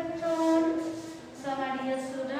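A high voice chanting long, drawn-out notes in two held phrases, with a short break just after a second in.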